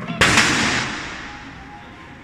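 A heavy mallet striking the pad of an arcade hammer strength-tester: one loud bang a fifth of a second in, dying away over about a second.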